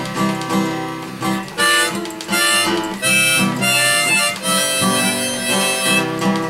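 Harmonica played in a neck rack over a steadily strummed acoustic guitar, in an instrumental break with no singing. The harmonica comes in strongly with held notes about a second and a half in.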